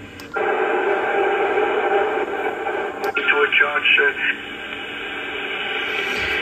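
Kenwood TS-590 HF transceiver's speaker hissing with shortwave band noise after switching to the 15-metre band. The hiss cuts in abruptly just after a short click. About three seconds in there is another click, followed by a second of garbled single-sideband voices.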